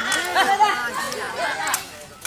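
Several people talking and calling out at once in overlapping chatter.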